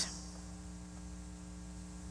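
Steady low hum with a faint hiss, unchanging throughout: the background tone of the pulpit microphone's sound pickup between sentences.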